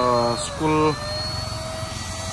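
Short bursts of speech over the steady whine and low hum of a small electric motor, which holds one pitch once the talking stops about a second in.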